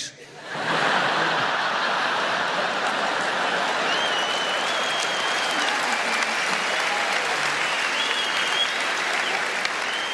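A large stand-up comedy audience applauding after a punchline. The applause swells in within the first second and holds steady, with a couple of held high whistles over it about four and eight seconds in.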